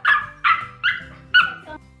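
Puppy barking: four short, high-pitched yaps about half a second apart.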